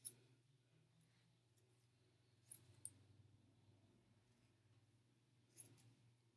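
A few faint scissor snips cutting the hair of a curly lace-front wig: one at the start, two about two and a half seconds in, and a short run near the end. Otherwise near silence.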